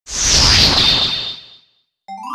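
A whoosh sound effect: a loud rush of noise with a thin whistling tone through it, fading out over about a second and a half.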